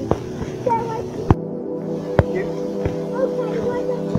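Background music holding a sustained chord, with a few sharp firework cracks over it; the loudest come about a second in and just after two seconds.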